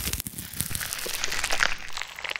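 Crunchy, crackling scraping sound effect, a dense run of small crackles and scratches, made to go with a wooden stick scraping a clump of ticks off skin.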